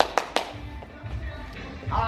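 A few sharp knocks in the first half-second, a wooden pole tapping against the ceiling while a shoe is pushed up, over background music.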